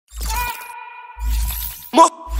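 Channel intro sound effects: two booming crashes about a second apart over a held musical tone, then a short sharp hit at the end.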